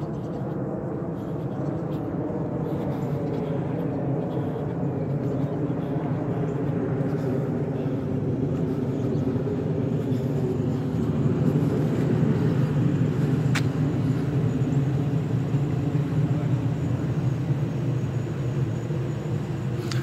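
Steady engine hum of a motor vehicle running, swelling slightly and easing off again, with a single sharp click about two-thirds of the way through.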